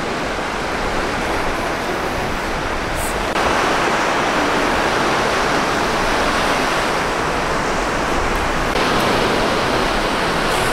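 Ocean surf breaking and washing up a sand beach: a steady rushing of waves with no let-up, stepping louder about three seconds in and again near the end.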